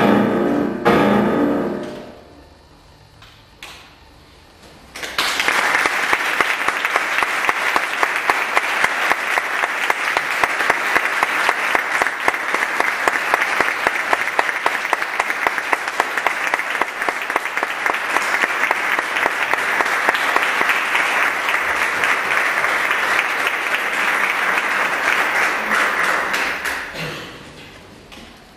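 The last piano-accompanied notes of a piece die away in the first two seconds. After a short pause, audience applause starts about five seconds in, holds steady for some twenty seconds, and fades out near the end.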